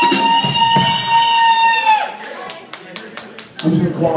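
A long, high held cheer, a single 'woo', from someone in the audience, breaking off about two seconds in, followed by a short burst of scattered hand claps.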